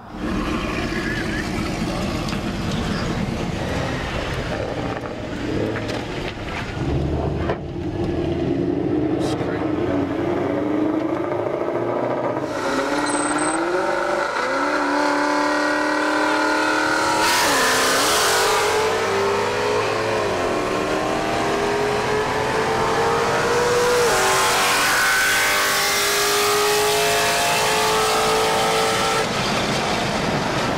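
Mercedes CLS55 AMG's supercharged 5.5-litre V8 accelerating hard under full throttle, heard from inside the cabin. The engine note climbs in pitch, dips at two quick upshifts a little past halfway, then pulls steadily higher with wind and road noise.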